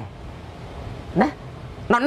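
One short rising yelp about a second in, over a low steady background hum.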